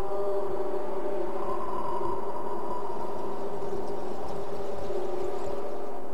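A steady, sustained drone of several held tones with no beat, opening the song's intro.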